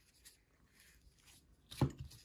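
Trading cards faintly sliding and rustling against each other as they are flipped through by hand, then a single short tap near the end as a stack of cards is set down on the table mat.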